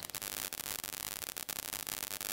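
Steady faint hiss of recording noise and room tone, with a few faint ticks, in a pause between spoken phrases.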